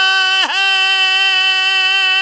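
A man's singing voice holding one long, steady high note on the word "hai" of a devotional qasida, unaccompanied. The note dips briefly about half a second in, then holds level.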